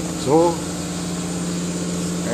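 Steady machine hum of a running vacuum-forming machine, a low even drone with a constant pitch that does not change.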